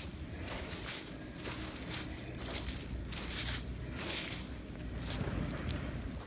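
Footsteps on sand and dry fallen leaves, about two steps a second, over a low steady rumble.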